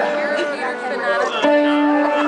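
Live rock band playing, with an electric guitar holding long sustained lead notes; a new held note comes in about one and a half seconds in.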